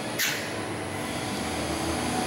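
Small screw press running, its motor-driven screw turning with a steady machine hum and a faint tone. A brief hiss sounds about a quarter second in.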